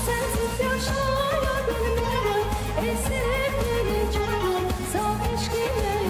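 A young girl sings an Azerbaijani song live into a microphone, her voice gliding and ornamented, over instrumental backing with a steady bass.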